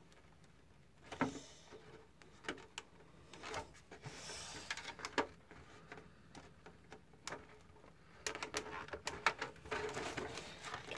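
Small irregular clicks and brief scrapes of bent metal body clips being worked onto the posts through a hard plastic RC truck body shell, with fingers handling the shell. The clicks start about a second in and come more often near the end.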